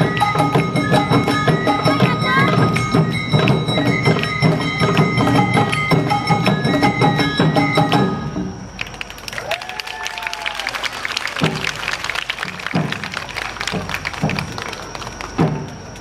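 An Awa Odori festival band (hayashi) playing a fast, steady rhythm on drums, with sustained melody tones over it, then stopping abruptly about halfway through. After that there are scattered knocks and claps with voices.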